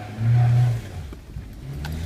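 Car engine accelerating as the car pulls away: a low drone that swells loudly just after the start for about half a second, then again briefly near the end.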